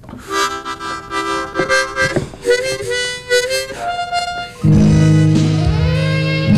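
Harmonica played into a stage microphone: held chords and a few changing notes. About three-quarters of the way through, recorded band music with a heavy low bass cuts in suddenly and louder than the harmonica.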